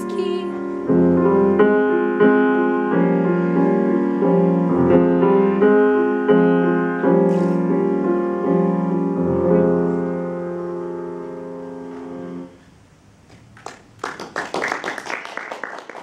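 A soprano's last sung note, with vibrato, ends right at the start. The grand piano then plays the closing bars alone, sustained chords growing softer and stopping about three-quarters of the way through. After a short pause, a spell of audience applause begins near the end.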